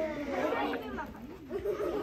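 Overlapping voices of young children chattering in a classroom, several talking at once with no single clear speaker.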